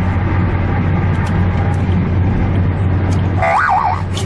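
Steady drone of a car interior on the move, engine and road noise with a strong low hum. Near the end, a high wavering tone that swoops up and down cuts in.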